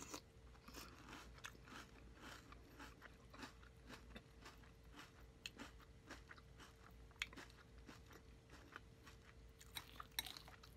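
Close-up chewing of crunchy Fruity Pebbles cereal in milk: a quiet, steady run of small crunches and wet mouth clicks, several a second.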